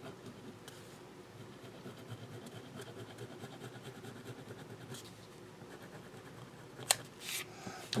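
Uni-ball Signo gel pen drawing along the edge of a paper strip, a faint scratching. A single sharp click comes about seven seconds in, followed by a short hiss.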